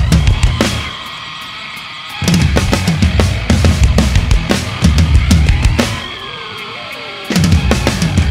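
Drum kit played hard along with a heavy rock backing track: kick, snare and cymbal hits in a fast driving pattern. Twice, about a second in and again near six seconds, the drums stop for a second or so, leaving only the quieter track before the full kit comes back in.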